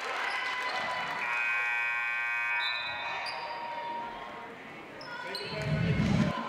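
Basketball bouncing on a gym's hardwood floor amid voices calling out across the hall during a stoppage in play, with one held call about a second in. Near the end there is a louder low whoosh.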